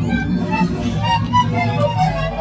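Instrumental jazz-fusion music: quick runs of short notes over a held low bass line.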